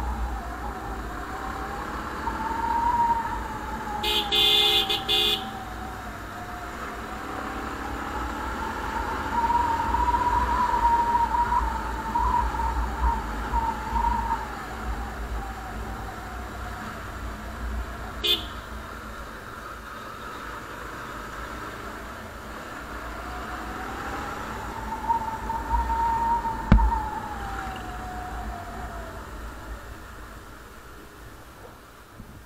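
Motorcycle engine running while it is ridden along at a steady speed, its whine slowly rising and falling with the throttle, over a low wind rumble on the microphone. A vehicle horn sounds for about a second about four seconds in, and gives a short toot about halfway through.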